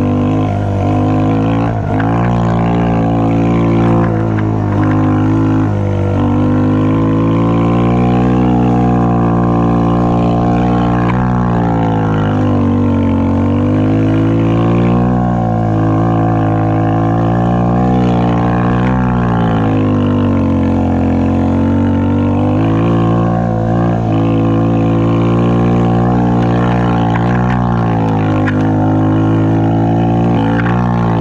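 Snow quad's ATV engine running under load, its pitch rising and falling in long swells as the throttle is opened and eased off.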